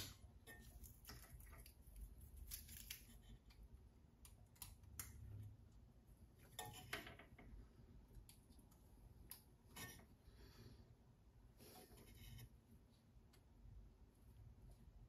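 Near silence broken by scattered faint metallic clicks and short scrapes: a feeler gauge and small hand tools working the breaker points of a small engine as the point gap is set.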